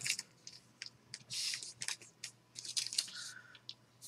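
Trading cards sliding and scraping against one another as a stack is flipped through by hand: faint, short scratchy rustles with a few small clicks.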